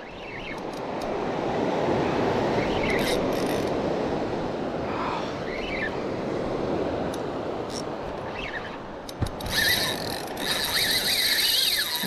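Spinning reel's drag giving line as a hooked ray starts to run. It starts near the end as a steady high-pitched screech and goes on past it. Before that there is a steady rushing noise.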